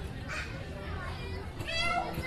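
Children's voices chattering over a low rumble of room noise, with one high-pitched child's cry rising near the end.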